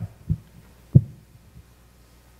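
Three dull, low thumps, the loudest about a second in: a man's footsteps on a church's raised platform, picked up through the sound system's microphone.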